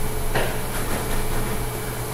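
Pause in speech: steady room hum and hiss, with one brief soft sound about a third of a second in.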